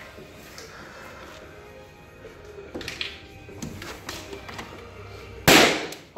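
Powder-actuated nail gun fired by a .22-calibre blank load: one loud sharp bang near the end, driving a fastener through a wooden wall bottom plate into a concrete floor to anchor it.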